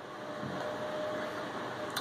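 Steady hiss of background room noise, with a faint thin tone for about a second in the middle.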